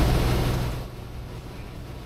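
Light aircraft cabin noise in flight: a loud, steady engine and propeller drone that fades away nearly a second in, leaving only a faint hiss.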